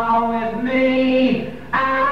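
Male rock vocalist singing long, held notes during a live mic check. The voice drops away briefly near the end and comes straight back in.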